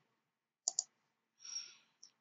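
Two quick computer mouse clicks close together, followed about a second later by a short soft hiss.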